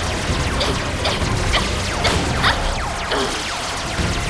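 Cartoon laser-gun sound effects: a rapid run of repeated shots, each a quick falling-pitch zap, over action music.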